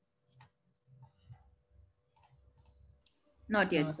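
A handful of faint, scattered computer mouse clicks while a screen share is being set up, followed near the end by a man's brief spoken hesitation.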